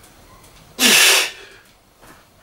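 A lifter's sharp, forceful exhale, once, about a second in, as he drives up out of a loaded barbell overhead squat; a short low grunt at the start turns into a breathy hiss.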